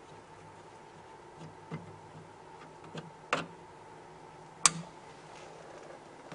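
A few sharp clicks and knocks, the loudest about three and four and a half seconds in, over a faint steady hum.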